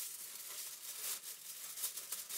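Aluminium foil sheets crinkling as they are handled, with a few sharper crackles in the second half.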